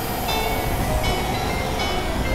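Experimental synthesizer noise music: a dense, steady rumbling drone with held mid tones, and clusters of high tones that come in and out a few times.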